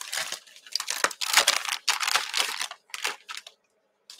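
Crinkling and rustling from something handled out of view, in a run of irregular short bursts that stop about three and a half seconds in.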